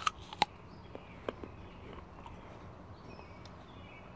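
Crunching bites of a crisp raw apple slice: two sharp crunches right at the start, then a few softer chewing crunches over the next second or so.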